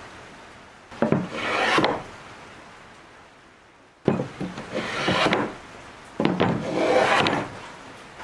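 Wooden hand plane shaving a board in three push strokes. Each stroke opens with a sharp click as the blade bites, then rasps for about a second while it lifts a curled shaving.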